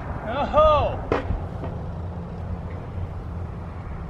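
A thrown frisbee landing with a single sharp knock about a second in, just after a short vocal exclamation, over a steady low rumble of wind on the microphone.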